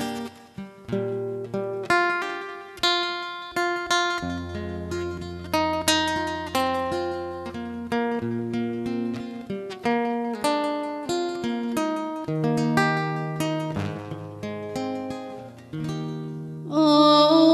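Solo acoustic guitar playing an instrumental break between sung verses: a plucked melody of single notes that ring and fade, over long-held bass notes.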